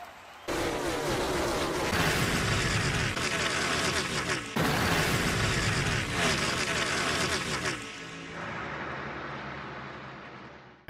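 Loud channel intro sting: a dense wash of sound with music and booming hits. It breaks off sharply about four and a half seconds in, starts again, and fades out over the last two seconds.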